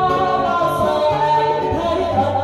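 A woman singing long, gliding held notes, backed live by acoustic guitars.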